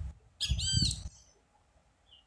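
A bird chirping: one quick burst of rapid, repeated high chirps lasting under a second, about half a second in.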